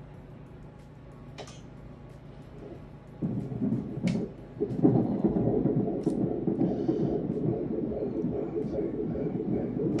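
Fetal heartbeat played through an ultrasound machine's Doppler speaker: a rapid low pulsing noise that starts about three seconds in, drops out briefly, then runs on steadily. It is a healthy heart rate of about 145 beats a minute.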